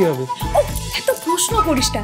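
A woman's voice speaking in short phrases with strongly swooping pitch, over background music that holds a steady note.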